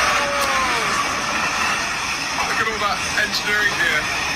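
A train-spotting clip played through a phone's small speaker: a Class 66 diesel freight locomotive passing with a steady rumbling rush, and a man's excited voice calling out over it.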